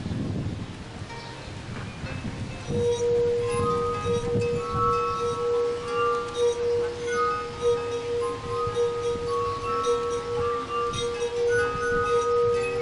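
Glass harp of water-tuned wine glasses played by rubbing wet fingertips around the rims. From about three seconds in it sings a steady held low note with a changing melody of higher notes above it.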